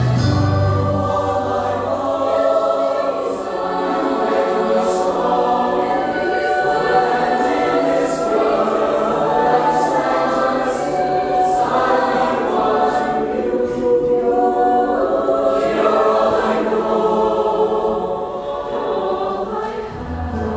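Show choir singing a sustained number in full harmony. The deep low notes underneath drop away about two seconds in, leaving mainly the massed voices.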